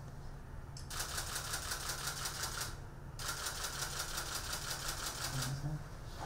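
Camera shutters firing in rapid continuous bursts: two long runs of fast clicking, the first starting about a second in and a brief gap near the middle.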